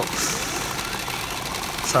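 Steady rattling din of a pachinko parlour: steel balls clattering through the machines, with a brief high hiss about a quarter second in.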